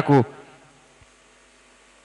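A man's voice ends a word into a handheld microphone, then a pause holding only a faint steady electrical hum from the amplified sound system, with one small click about a second in.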